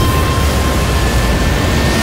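Film sound effect of a spacecraft re-entering the atmosphere: a loud, steady rush of noise over a deep rumble, cutting off suddenly at the end.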